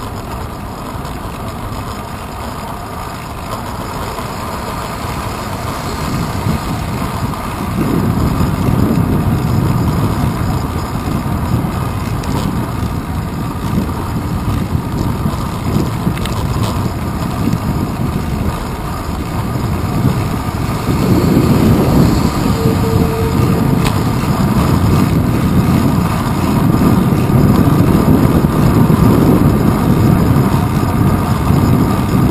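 Riding noise picked up by a camera mounted on a bicycle's handlebars: a continuous rumble of road, wind and passing city traffic. The rumble grows louder about a quarter of the way in and again past two-thirds, with a brief thin tone in between.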